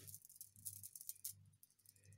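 Faint clicking and rattling of pearl beads knocking against one another as a pair of pearl-cluster earrings is handled in the fingers: many small, irregular ticks.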